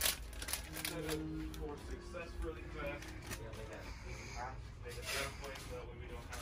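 Faint background voices, with scattered light clicks and rustling from items being handled.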